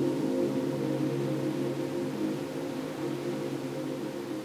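Soft ambient background music: a sustained chord of low steady tones, slowly fading.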